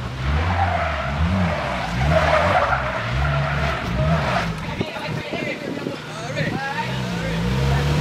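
Rap track with a repeating deep bass beat, over which the tires of a Polaris Slingshot three-wheeler squeal as it is driven through a turn for about the first four and a half seconds.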